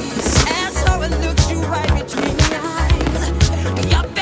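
Instrumental pop music with a steady drum beat and deep bass.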